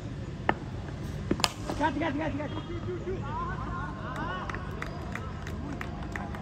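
A cricket bat strikes a tennis ball with a sharp crack about a second and a half in, among a few smaller knocks. Men's voices then shout for a couple of seconds over a steady outdoor crowd murmur.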